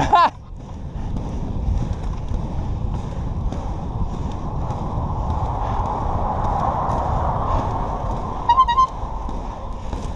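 Inline skate wheels rolling steadily on asphalt, mixed with wind on the microphone. Two short high notes sound close together near the end.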